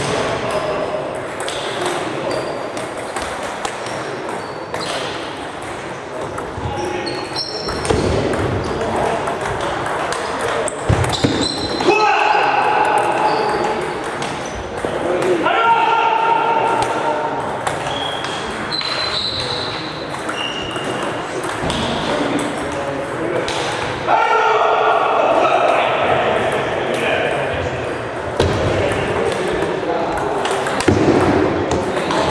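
Table tennis balls clicking off bats and tables in a large, echoing hall where several tables are in play, with people's voices and calls in the background.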